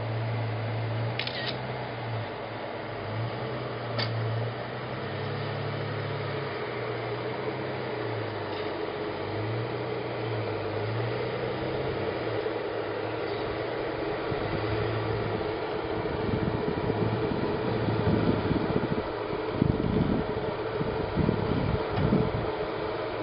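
Jeep Wrangler JK Unlimited engine heard from a distance, its low drone rising and falling in pitch as it is throttled up and eased off while crawling up rock ledges, over a steady hiss. In the last several seconds, irregular low rumbling thumps come in.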